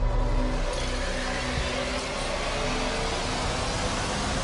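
Television title-sequence theme music overlaid with a steady rushing, whooshing noise effect that sets in under a second in and holds over a few sustained notes.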